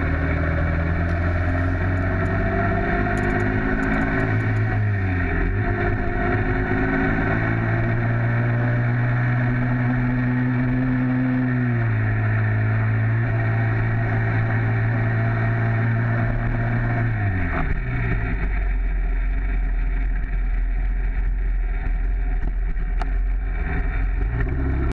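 Small two-stroke motorized-bicycle engine running under way, its pitch holding steady for stretches and dropping three times, about five, twelve and seventeen seconds in, as the engine speed falls.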